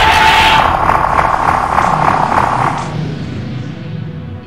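Dalek extermination-ray sound effect: a steady high tone over rapidly pulsing, buzzing noise that fades out after about three seconds, with music beneath.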